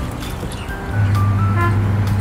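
Whirlpool twin-tub washing machine agitating soapy laundry in its wash tub, its motor giving a steady low hum that grows louder about a second in, under background music.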